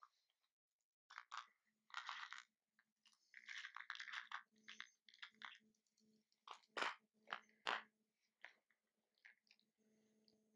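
Faint footsteps crunching and rustling through moss, low shrubs and twigs on a forest floor, in irregular steps with a few sharper clicks about seven and eight seconds in.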